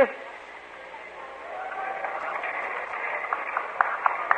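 A faint murmur of congregation voices over the hiss of an old live recording, swelling about a second in, with a few short sharp clicks near the end.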